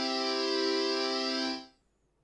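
Martinic AX73 software synthesizer playing a held chord on a layered patch with chorus, played from a MIDI keyboard. It sounds for about a second and a half, then dies away over a short release.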